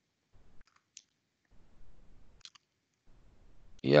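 A few short, sharp computer mouse clicks, the clearest about a second in and two and a half seconds in, over faint low room noise.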